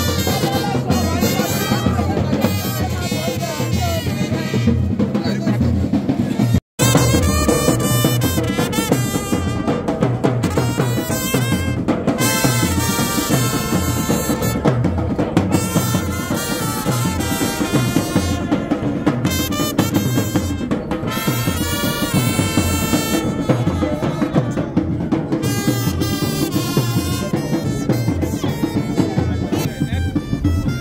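A brass band playing: trumpets over a drum beat, continuous and loud. The sound drops out for an instant about seven seconds in.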